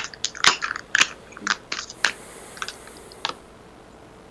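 A deck of tarot cards being shuffled by hand: a run of irregular quick card snaps and clicks that stops a little over three seconds in.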